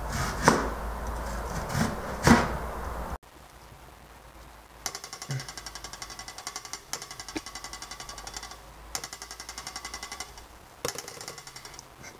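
Serrated knife cutting a potato on a plastic cutting board, with a few sharp knocks of the blade on the board. After about three seconds the sound cuts to a quieter, rapid and even pulsing in phrases of about two seconds.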